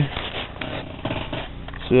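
Irregular rustling and scraping handling noises as the camera is moved about close to a hand.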